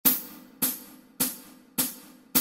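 Hi-hat count-in for a backing track at 104 beats per minute: four even strokes, just under two a second, each ringing briefly and fading.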